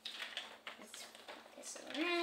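Hands handling a paper fold-out leaflet and small clear plastic packaging pieces on a tabletop, giving a string of small, irregular clicks and crinkles.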